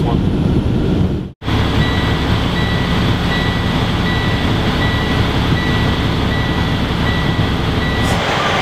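Heavy truck engine and road noise rumbling steadily, cutting out suddenly about a second and a half in. After that the rumble carries on with a high electronic beep repeating about once a second, like a truck's reversing alarm.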